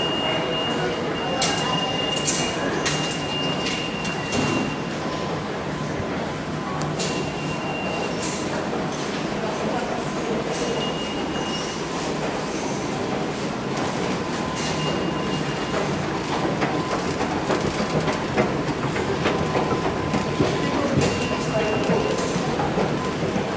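New York City subway station ambience: a steady rumble of trains echoing through tiled passageways. A thin high whine comes and goes over it, and sharp clicks are scattered through it.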